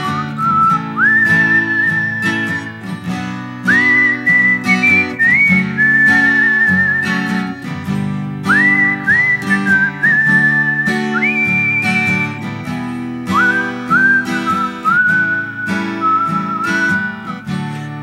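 A man whistling a slow melody into a microphone over strummed acoustic guitar chords. The whistled phrases slide up into each note and hold with a slight wobble, in the instrumental break of a sertanejo ballad.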